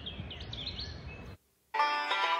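Small birds chirping over outdoor background noise, which cuts off abruptly about one and a half seconds in; after a brief silence, music starts near the end.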